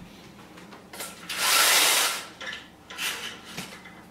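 Window blinds being pulled open: one long, loud rushing pull about a second in, followed by three shorter ones.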